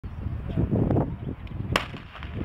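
A single starter's pistol shot near the end, starting the hurdles race; it is preceded by about half a second of muffled low rumbling noise.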